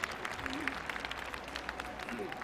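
Ice-rink audience applauding: many scattered hand claps over a steady crowd hum.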